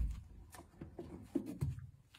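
Hardcover books being handled at an open cardboard box: a low thump at the start, then a series of light knocks and cardboard rustles as one book is put away and the next is taken out.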